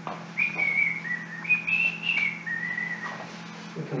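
A man whistling a short tune of several held notes that step up and down, stopping about three seconds in.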